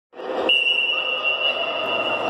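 Echoing noise of an indoor sports hall with children, joined about half a second in by a steady high-pitched tone that holds on.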